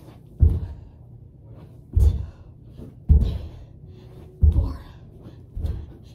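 Feet thudding on the floor during mountain climbers (running in a plank position), five dull thumps a little over a second apart.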